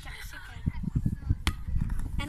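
A single sharp slap about one and a half seconds in, as a plastic football is tossed up into the air from the hands, over a low irregular rumble and faint voices.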